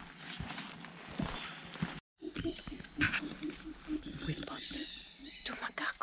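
From about two seconds in, red howler monkeys calling in the rainforest canopy: a run of low, rhythmic grunts, with a steady high insect drone behind.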